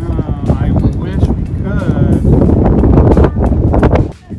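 Wind buffeting the camera's microphone, a loud, rough rumble, with voices talking over it; the level drops abruptly at the very end.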